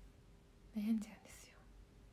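A woman's voice: one short spoken syllable about a second in, followed at once by a brief breathy, whispered sound, with quiet room tone around it.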